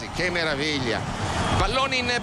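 Stadium crowd cheering after a goal, with a voice speaking over it.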